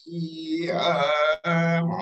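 A man's voice chanting a mantra in long held syllables on a nearly level pitch, with a short break for breath about one and a half seconds in.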